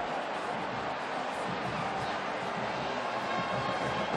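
Steady noise of a large stadium crowd, an even wash of many voices with no single voice standing out.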